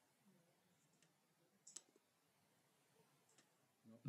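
Near silence with a few faint clicks, the sharpest a little under two seconds in: a piece of chalk tapped against a handheld whiteboard.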